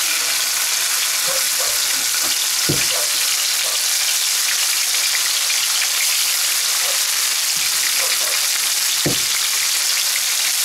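Beef medallions sizzling steadily in hot oil in a non-stick frying pan as more pieces are laid in, with a few soft knocks.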